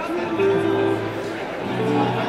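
Electric guitar played through an amplifier: a sustained note or chord rings from just after the start, and a new one is struck about a second and a half in, over a low murmur of audience chatter.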